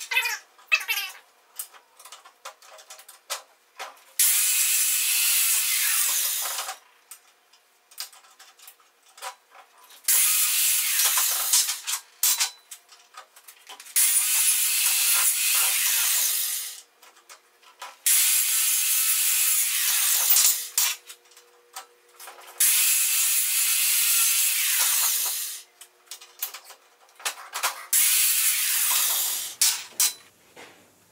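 Stick (arc) welding with E6011 rods on AC: six separate runs of steady arc noise, each two to three seconds long, with small clicks and knocks between them.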